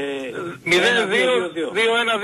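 Speech only: men talking in Greek.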